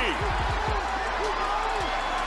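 Television football broadcast sound: stadium noise and the commentator's voice under a warbling, swooping background sound.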